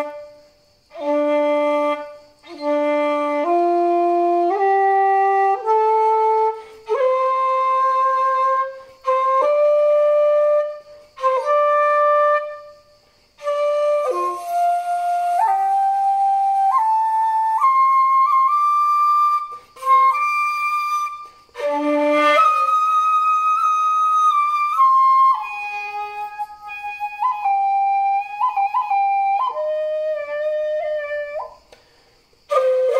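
Unlacquered madake bamboo shakuhachi, a 1.8 in D, played solo: separate held notes climbing step by step from the low D, then flowing phrases up into the upper register, with some breath noise on the higher notes. It is still bare bamboo inside, hochiku-style, with no urushi lacquer yet.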